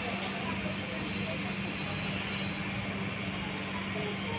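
Steady background noise with a constant low hum and faint, indistinct voices.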